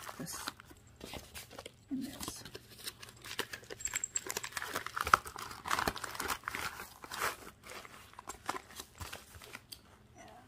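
Paper mailers, envelopes and a plastic bag being handled and folded, with irregular crinkling and rustling crackles; the sharpest crackle comes a little past halfway.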